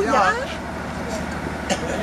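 An engine idling with a steady low hum, and one short click near the end.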